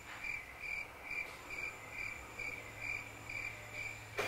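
Cricket chirping steadily: a high-pitched chirp repeated evenly, about three times a second.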